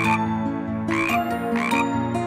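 Cartoon frog croak sound effect, three short croaks, over gentle background music.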